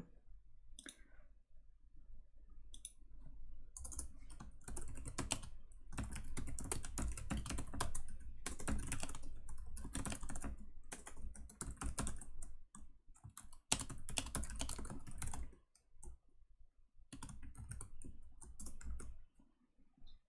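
Typing on a computer keyboard: a few scattered keystrokes at first, then a long fast run of typing from about four seconds in, a short pause, and another brief run near the end.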